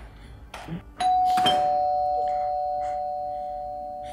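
Two-tone doorbell chime: a higher 'ding' about a second in, then a lower 'dong' half a second later, both ringing on and slowly fading.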